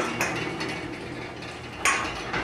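Sliding horse stall door rolling open along its track with a steady rattling rumble, ending in a sharp knock near the end.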